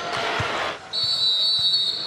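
Referee's whistle blown in one long, steady, shrill blast lasting about a second and a half, starting about a second in, after a moment of arena crowd noise.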